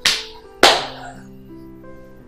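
Two sharp hand smacks, about two-thirds of a second apart, over soft background film music.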